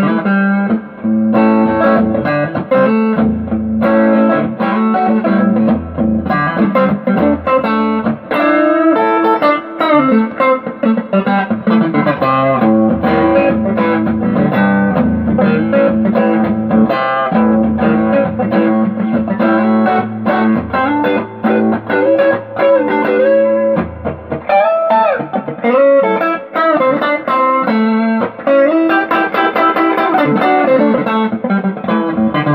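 Electric guitar on its neck pickup, a Fender Texas Special single-coil, played continuously. It runs through picked notes and chords with a few sliding, bent notes.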